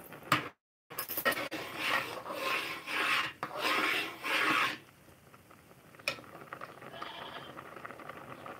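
Rubbing and scraping of a phone being handled close to its microphone, in a run of noisy bursts over about four seconds. The sound cuts out completely for a moment just before the bursts start, and one more click comes near the end.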